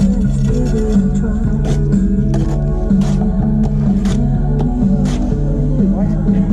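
Pop music playing on a radio, with a steady beat and a bass line moving in steps.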